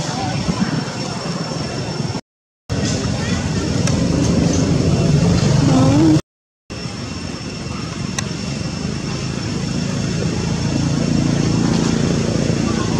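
Outdoor background noise: indistinct voices over a steady low rumble like passing traffic, with a thin high steady tone. The sound drops out to silence twice, for about half a second each time, a little after two seconds and a little after six seconds.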